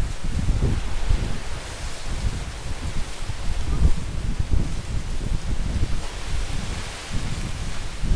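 Strong wind blowing through fan palms, their dry fronds rustling in a steady hiss, with gusts rumbling on the microphone and rising and falling in strength.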